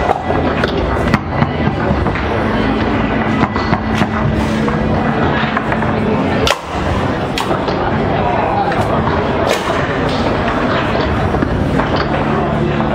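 Foosball being played on a tournament table: irregular sharp clacks of the ball struck by the rod-mounted men and bouncing off the table, over the steady chatter of a crowded hall.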